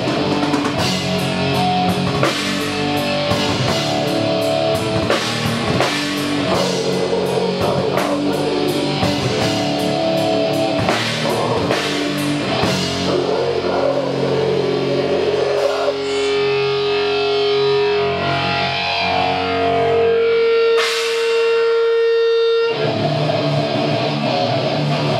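Death metal band playing live: distorted electric guitars and bass over fast drumming. About two-thirds of the way in the drums stop and held guitar notes ring out, one high note sustained for a few seconds, then the full riff crashes back in near the end.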